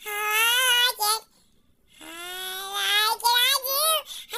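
A high-pitched voice sings two drawn-out, wavering phrases, the second beginning about two seconds in after a short pause.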